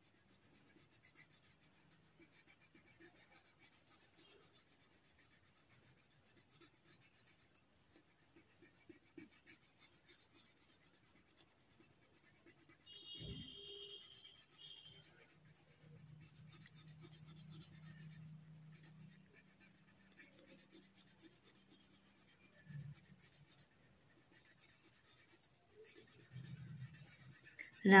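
Faint, quick, repeated strokes of colour being rubbed onto paper as a drawing is filled in slowly by hand.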